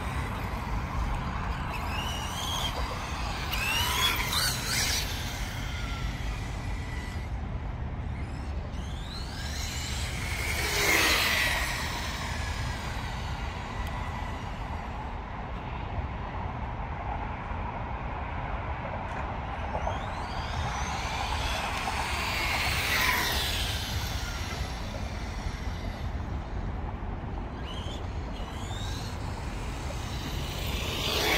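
Electric Kyosho GT2-E radio-controlled car driving on asphalt: its whine rises and falls in pitch as it speeds up and passes close, three times, loudest about eleven seconds in. A steady low rumble of city background runs beneath.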